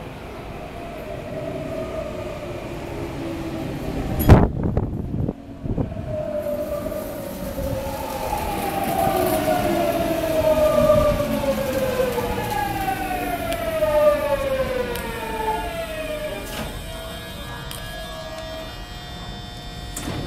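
Tokyu 9000 series electric train braking into a station: its GTO-VVVF inverter gives a whine made of several tones that falls steadily in pitch as the train slows, dying away as it halts. A single loud knock comes about four seconds in, a click just after it stops, and a steady hum remains while it stands.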